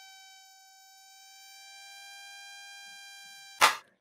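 Synthesized mosquito whine from a Web Audio oscillator, a thin buzzy tone whose detune is swept by a sine wave so it wavers gently up and down. It cuts off near the end with a short sharp noise.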